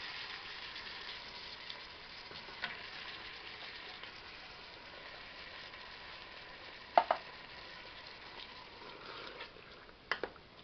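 Gentle steady sizzling of onions, garlic and bacon frying in oil in a stainless steel pot, now with hominy and kidney beans added, with light clicks of a wooden spoon and one sharp knock about seven seconds in.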